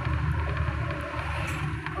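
Car interior noise while driving: a steady low rumble of engine and road noise, with a couple of faint clicks in the second half.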